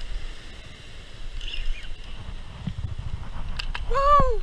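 Wind buffeting the microphone over surf breaking on rocks: a steady low rumble that grows heavier about halfway through, with a few sharp clicks near the end.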